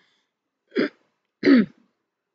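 A woman clearing her throat with two short coughs, the first just under a second in and the second about half a second later.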